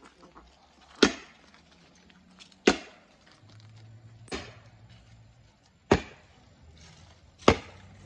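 Five sharp, loud knocks at an even pace, about one every second and a half.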